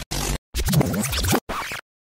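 Record-scratch sound effect, the kind used to stop music in an edit: three quick scratches, the middle one longest, cutting off abruptly into dead silence.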